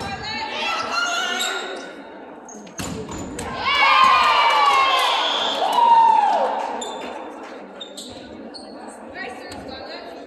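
A sharp volleyball impact on the hardwood court about three seconds in, then players' high-pitched shouting and cheering echoing in the gym for about three seconds as the rally ends. One cry falls in pitch near the end of it.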